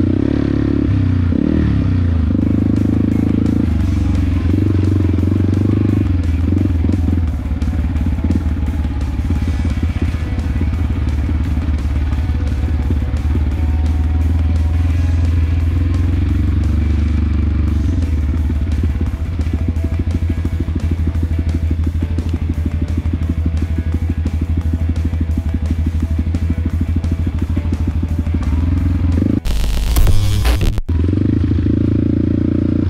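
Single-cylinder engine of a Yamaha WR155R trail motorcycle, ridden with throttle rising and falling over the first several seconds and then running steadily, with background music over it.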